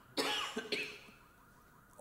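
A person coughs twice in quick succession near the start, a fuller cough followed by a short second one.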